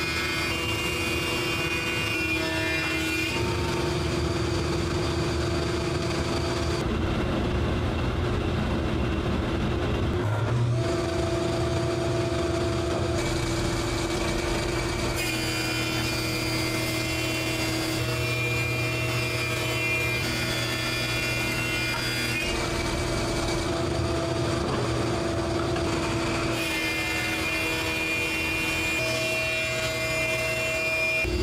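Thickness planer running and planing rough hickory boards, a steady machine whine with the cutting sound shifting every few seconds as boards feed through.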